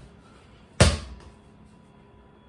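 A mini basketball strikes once, a single sharp thump just under a second in, with a brief ring-out in a small room.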